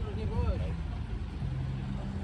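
Ursus tractor diesel engines idling with a steady low rumble. People's voices are heard over them in the first half-second.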